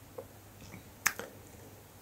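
A few faint, short clicks, the sharpest about halfway through, with lighter ticks around it.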